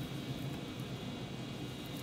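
Steady low hum and hiss of room tone. No distinct knife strokes or other events stand out.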